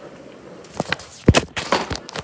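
Thumps and rubbing of a phone being picked up and handled close to its microphone, with footsteps. A cluster of sharp knocks starts a little under a second in, the loudest about halfway through.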